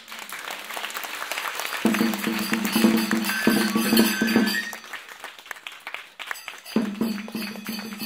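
Kagura accompaniment: a dense run of drum beats and jangling small hand cymbals under a held pitched tone that comes in about two seconds in, fades a little past the middle, and returns near the end.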